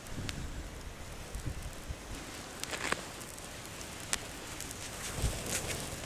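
Dry grass tinder burning, with a few scattered crackles and pops over soft rustling.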